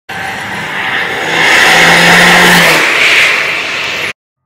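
A car driving past at speed, a rushing noise that builds to its loudest about two seconds in and then fades.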